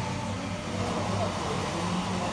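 Small motorbike engine idling steadily, heard as playback through a handheld device's speaker.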